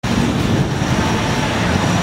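Steady outdoor background noise, a low rumble under a hiss, cutting in suddenly at the start.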